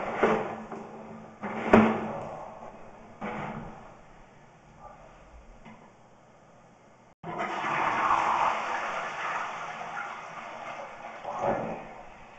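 Water rushing through a toilet drain line, as from a flush: three short splashing bursts in the first few seconds, then a sustained rush beginning about seven seconds in that swells again near the end.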